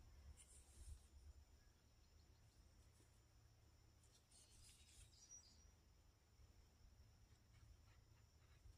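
Near silence: room tone with a low rumble, and faint scratches of small plastic and metal gearbox parts being handled, about a second in and again about four to five seconds in.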